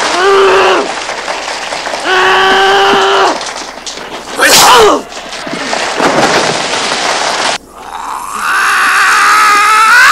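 A man's wordless vocal sounds. Two held groans come first, then a loud falling yell about halfway through, then a long drawn-out groan rising near the end.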